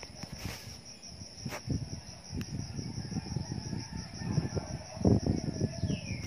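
Steady high-pitched chirring of insects in the surrounding trees, with irregular low rumbling on the microphone underneath that swells briefly about five seconds in.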